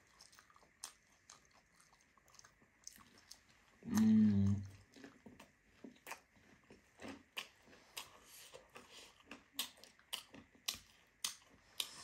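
A mouthful of chatpate, the crunchy spicy puffed-rice snack, on a fried crisp being bitten and chewed close to the microphone: many small, irregular crunches. A brief hummed voice sound comes about four seconds in.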